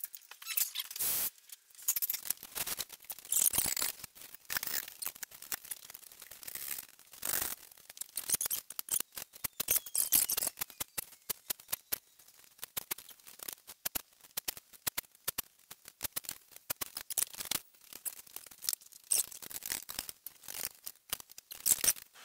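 Hands working clamps and plywood panels into place on a workbench: irregular clicks and knocks with short squeaks and scrapes of wood and metal.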